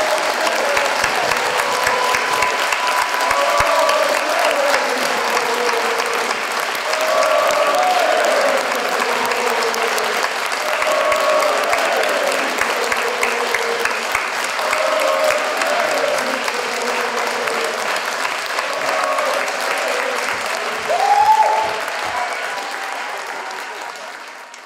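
A large audience applauding steadily, with voices calling out over the clapping. One louder call rises above it about 21 seconds in, and the applause fades out near the end.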